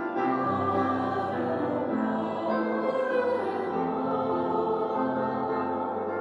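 A small group of voices singing a slow hymn in long held notes, moving from note to note about once a second.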